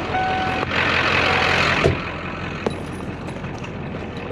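Open-door warning chime of a truck sounding one steady electronic beep, then about a second of loud rushing noise and a sharp thump about two seconds in.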